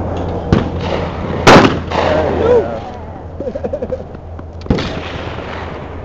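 A single loud shotgun blast about one and a half seconds in from a Remington 870 pump-action shotgun fired at a clay target, with two lesser sharp knocks, one just before it and one about three seconds after. Voices react after the shot.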